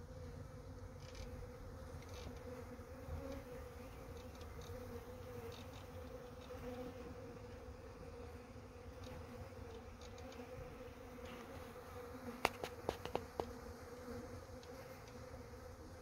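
Honeybee swarm buzzing steadily, the massed wingbeats of a swarm that has just settled in a cluster on a branch. A quick run of sharp clicks about three quarters of the way through.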